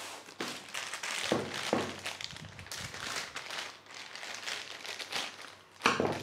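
Irregular crinkling and rustling of a plastic zip bag holding a power cable as it is handled and laid down, with a sharp tap near the end.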